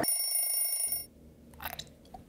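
A short bright ringing sound-effect sting, bell- or alarm-like and made of several steady high tones, lasts about a second and cuts off suddenly. A brief faint rustle follows near the end.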